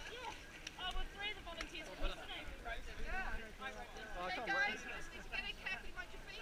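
Several people's voices talking and calling out at a distance, overlapping, with no words clear.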